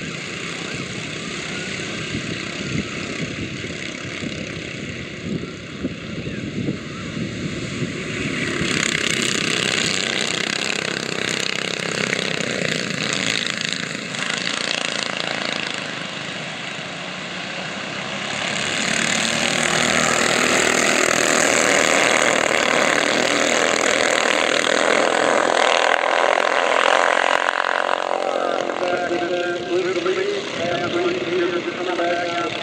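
Several racing go-kart engines running at speed, the sound of the pack swelling as it grows louder about a third of the way in and again just past halfway as the karts pull away on a green flag.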